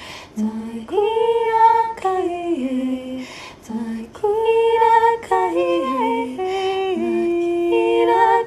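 A woman singing wordless light-language vocables unaccompanied, in long held notes that step down in pitch across each phrase, with brief pauses between phrases.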